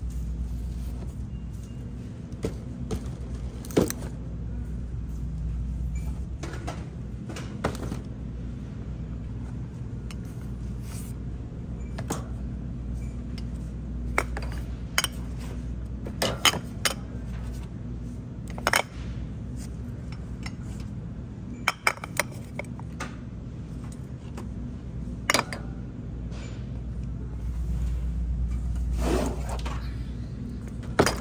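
Glass pasta sauce jars clinking against each other and the wire shopping cart as they are taken off the shelf and loaded in: a dozen or so sharp, irregular clinks over a steady low hum.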